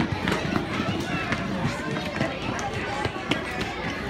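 Children running across a wooden parquet floor, many quick footfalls, amid the chatter and voices of a crowded room.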